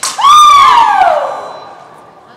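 A woman's loud yell, a fencer's shout at the end of an épée exchange: it jumps up in pitch and then slides down over about a second and a half before fading.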